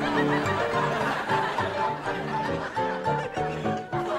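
Piano playing a melody of separate notes, with a studio audience laughing over it.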